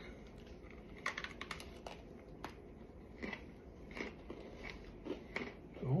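Close-up biting and chewing of crisp Coca-Cola Oreo sandwich cookies: a quick cluster of crunches about a second in, then a run of softer, regular chews.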